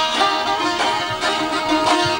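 Two Azerbaijani ashiq saz, long-necked plucked lutes, played together in a rapid run of plucked and strummed notes: a traditional ashiq tune.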